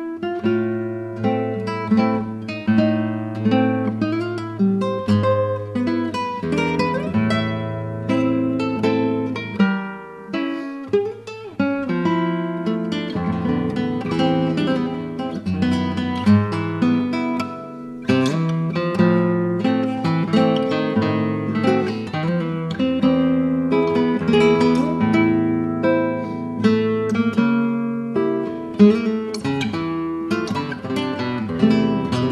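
A Loriente "Clarita" cedar-top classical guitar playing a solo piece: plucked melody notes over held bass notes, running on continuously apart from two short dips in loudness.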